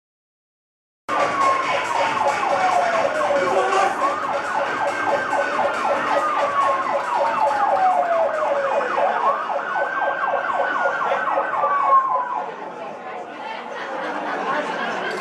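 A siren wailing: its pitch falls slowly, jumps back up and falls again, about three times over a fast, steady pulsing. It starts suddenly about a second in and gets quieter near the end.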